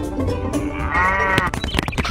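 A single short bleat about a second in, over background music.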